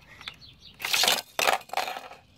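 Three short, loud clatters about half a second apart: a die-cast toy car rattling against the plastic Hot Wheels corkscrew track.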